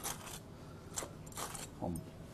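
A table knife spreading mayonnaise across a toasted bun, heard as a few brief, faint scrapes.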